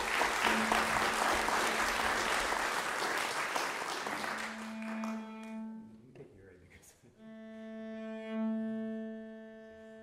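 Audience applause that dies away over about five seconds while one cello holds a steady low note; then, about seven seconds in, several cellos sound long sustained notes together.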